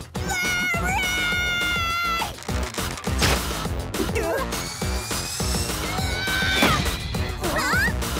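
Cartoon soundtrack: background music with held, pitched cartoon sound effects and short vocal sounds. One long held tone runs for about two seconds near the start, and another comes around six to seven seconds in.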